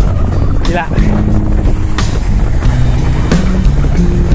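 Strong wind buffeting the microphone of a camera carried on a moving bicycle: a loud, steady low rumble.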